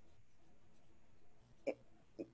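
A quiet pause with faint room hiss, then one short, sudden catch in a woman's voice near the end, just before speech resumes.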